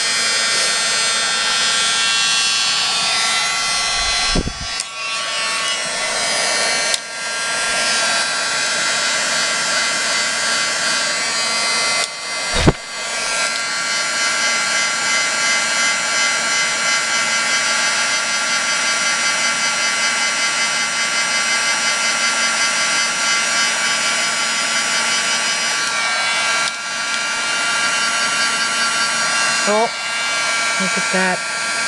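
Handheld heat embossing tool blowing steadily, a continuous fan whir with a steady hum, as it melts black embossing powder on a stamped sentiment. Two brief thumps break in about four and about twelve seconds in.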